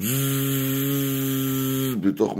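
A man's voice holding a long, steady buzzing "zzzz" for about two seconds, starting and stopping abruptly: a vocal imitation of the buzzing he says he hears inside his head.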